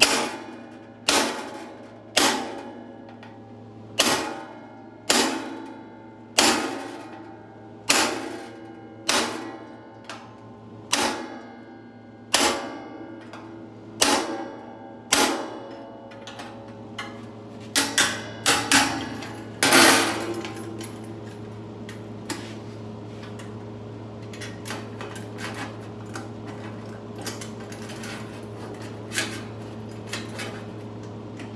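Hammer blows on a rounded-end setting tool, driving a flute groove into thin sheet metal: about one strike a second, each ringing briefly. A quick run of blows comes about two-thirds of the way through, the loudest near its end, after which only faint light knocks remain.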